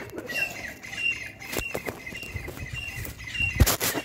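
A bird calling over and over with short, high, falling chirps, several a second, one that keeps calling all day long. A brief loud rustle cuts across it near the end.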